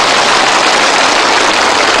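A large crowd of soldiers applauding, the clapping dense and steady.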